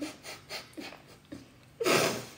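A woman's soft breathy chuckles and exhalations close to the microphone, with a louder, breathy puff of air just before the end.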